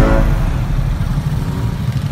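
Motorcycles rolling at low speed: a steady low engine and road rumble.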